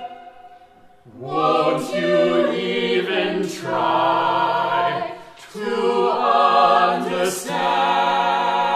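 Several classically trained voices singing together with vibrato. The singing begins after a short hush about a second in and breaks off briefly just past the middle before resuming.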